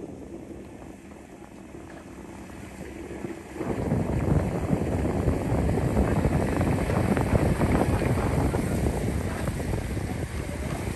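Motor and rushing-wind noise from a coaching launch: low and even at first, then suddenly much louder about three and a half seconds in as the launch speeds up, a dense rumble that holds steady after that.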